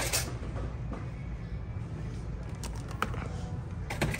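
Store ambience between remarks: a steady low hum with faint background music and a few light clicks.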